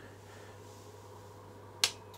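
A single sharp click near the end, a switch being flicked on, over a faint steady hum.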